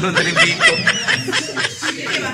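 A person laughing in a quick run of short, high-pitched laughs.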